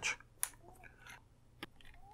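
Small screwdriver working the screws of a metal access hatch on a camera lens's doubler housing: faint scraping with a few sharp clicks, the clearest about half a second in and near the end.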